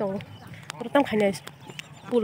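A person talking, in short phrases.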